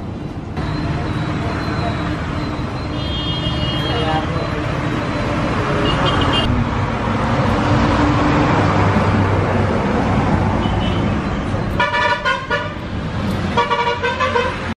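Busy road traffic with vehicle horns tooting several times, loudest in a run of short toots near the end, over the chatter of voices.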